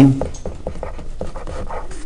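A felt-tip marker scratching and tapping on paper: faint, irregular short ticks.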